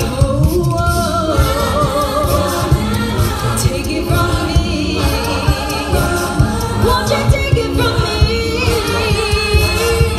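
Live a cappella group singing through microphones and a PA: several voices in harmony with vibrato, over a steady low beat from vocal percussion.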